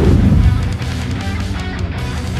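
Guitar-driven rock background music plays steadily. A loud swoosh falls from high to low right at the start and lasts about half a second.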